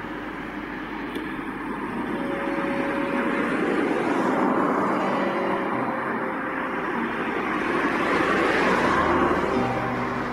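Road traffic noise that swells twice as vehicles pass, with faint music underneath.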